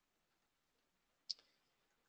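Near silence, broken once about a second in by a single short click of a computer mouse.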